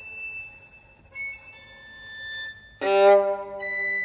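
Solo violin playing a string of high, thin held notes, then about three seconds in a loud, full-bodied low note bowed and sustained while high notes sound above it.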